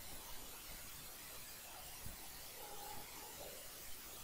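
Faint room tone: a steady hiss with a few soft ticks.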